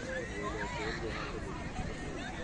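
Overlapping voices of people in an open park: background chatter with a few higher calls whose pitch slides up and down.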